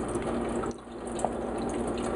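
Water running steadily into a stainless steel kitchen sink, with a brief lull about three-quarters of a second in.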